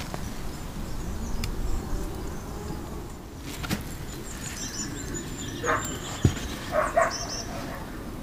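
Outdoor ambience with a steady low rumble of wind on the microphone, a few short high chirping calls in the second half and a single sharp knock a little after six seconds.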